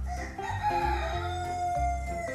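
A recorded rooster crowing once: one long cock-a-doodle-doo that rises and then slowly falls away. It plays over background music with a steady pulsing bass.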